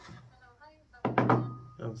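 A man speaking on a phone call, with a short thunk about a second in, over table-side handling of dishes.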